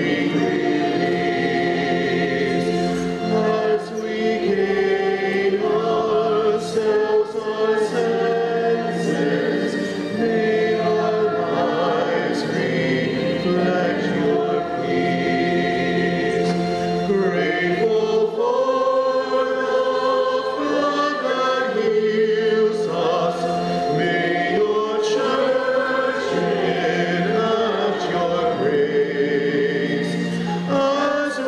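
A church choir singing a hymn in sustained, held notes.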